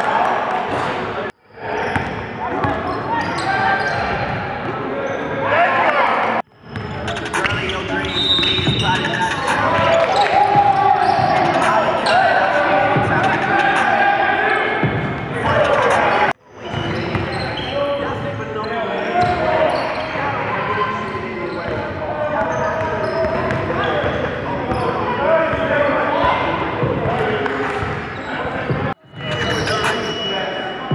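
Live court sound of a basketball game in an echoing gym: a basketball bouncing on the court amid players' indistinct voices. The sound drops out abruptly for a moment four times, at cuts between plays.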